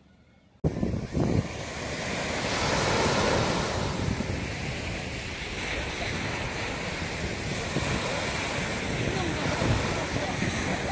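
Small waves breaking on a sandy beach, a steady wash of surf, with wind buffeting the microphone in low gusts. The sound starts abruptly about half a second in.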